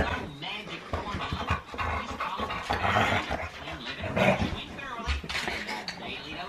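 A Finnish Lapphund puppy and a Siberian husky play-fighting, panting and making short play noises as they wrestle.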